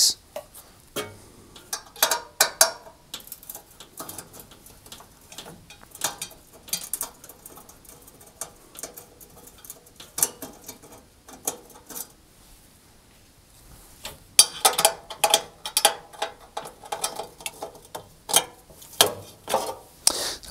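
Screwdriver backing out the screws of a cooker grill's metal baffle plate, with the plate being handled: scattered small clicks, ticks and scrapes of metal, busiest in the last few seconds.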